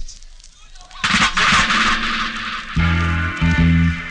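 Reggae record starting up on a sound system, off an old cassette tape. After a brief lull, a loud hissy wash comes in about a second in, and a heavy bass line drops in near three seconds.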